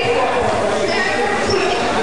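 Spectators' voices in a gymnasium, many people talking and calling out at once with a hall echo. A few low thuds, like a basketball bouncing on the hardwood, come through.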